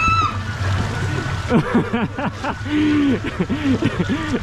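Pool water splashing and sloshing as a swimmer moves through it, with voices over it from about a second and a half in.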